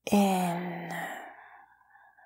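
A woman's audible sigh on the exhale: a breathy, voiced out-breath that starts sharply and fades away over about a second and a half.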